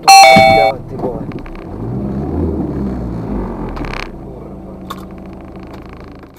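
A loud metallic clang with a ringing tone lasting under a second as the car's underside strikes hidden chunks of concrete, the impact that punctured the oil pan. A low engine rumble follows.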